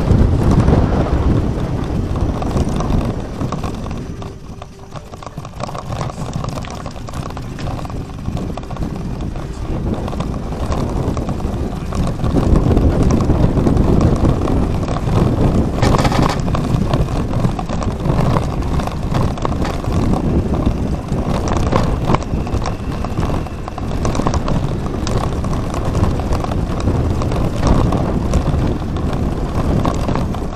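Wind rushing over a bike-mounted camera's microphone on a moving bicycle, with small knocks and rattles from the bike over the road. It dips about four to six seconds in and is louder again from about twelve seconds.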